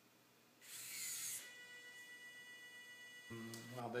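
Servo motors in a 3D-printed robotic hand driving the fingers to a new pose: a short rushing burst of noise about half a second in, then a steady high whine with several fixed tones for about two seconds as the servos hold the fingers in place.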